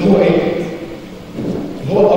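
A man speaking Arabic in a large hall, his voice coming in two short phrases with a pause between.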